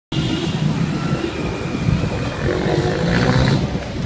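Steady street traffic noise: a continuous low rumble of engines from cars, auto-rickshaws and motorcycles moving along a busy road.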